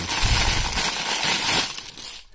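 Thin paper wrapper from a plastic-free toy package crinkling and rustling as hands pull it open, dying away near the end.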